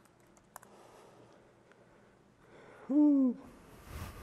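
A person's short, drawn-out 'yeah' with a laugh about three seconds in, its pitch rising and then falling. Before it, low room noise with a few faint keyboard clicks.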